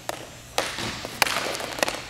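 Hockey sticks and a puck clacking on a hard roller-rink floor: a handful of sharp clacks, the loudest a little past the middle and a quick pair near the end, over a faint rolling hiss.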